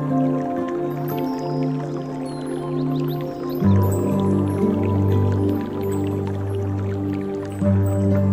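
Calm instrumental relaxation music of slow, sustained notes, with dripping and trickling water sounds mixed in. The bass moves down to a lower, fuller note about halfway through.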